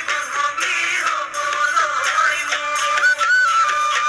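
An Assamese Bihu song with singing over folk instruments. About three seconds in, a long held melody line moves in steps.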